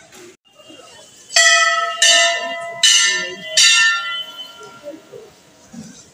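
Hanging temple bell struck four times, about once every three-quarters of a second, each stroke ringing out and fading.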